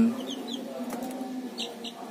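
Week-old ayam Bangkok fighting-breed chicks peeping: a few short, high, falling peeps, a pair soon after the start and another pair about a second and a half in, over a faint low hum.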